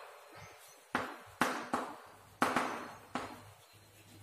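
Chalk writing on a chalkboard: about six strokes, each starting with a sharp tap and trailing off in a short scratch.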